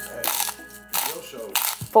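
Pink salt grinder twisted over a blender jar, giving about three short gritty bursts of grinding and rattling crystals.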